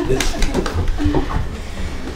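Children moving back to their seats on a wooden floor: shuffling footsteps and low thumps, with brief murmured voices and a short hum-like sound about a second in.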